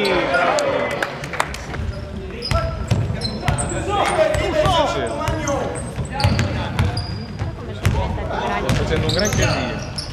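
A basketball bouncing on a gym's wooden floor during play, irregular sharp knocks echoing in the hall, with players' and spectators' voices calling out over it.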